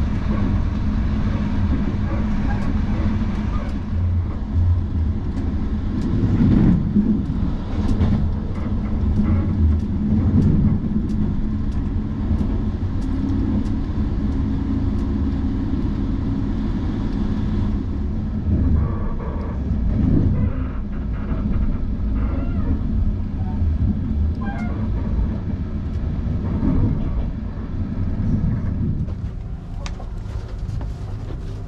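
Moving passenger train heard from inside a sleeping car: a steady low rumble of wheels on rail, with frequent short clicks.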